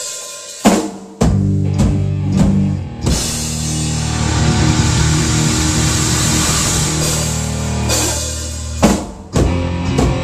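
Pearl double-bass drum kit played hard: a few separate hits, then from about three seconds in a sustained wash of crashing cymbals over fast drumming, a sharp accent near the end, a brief drop, and the drumming picking up again.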